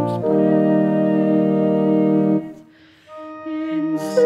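Instrumental hymn music: a held chord closes a verse and cuts off about two and a half seconds in. After a brief near-silent gap, a soft sustained note leads into the next verse near the end.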